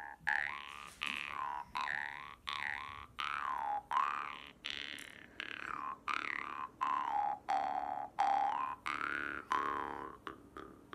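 Jaw harp played in a steady rhythm of about two plucks a second, its low drone topped by a bright overtone that slides up and down as the mouth changes shape.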